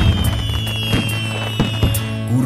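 Fireworks going off over background music: several sharp bangs, the loudest right at the start, another about a second in and more near the end. A steady low drone and a high tone that slowly falls run underneath.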